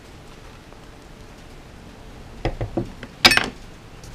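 Handling noise as the bass parts are moved on the bench: a few soft knocks about two and a half seconds in, then one sharp clink a little after three seconds.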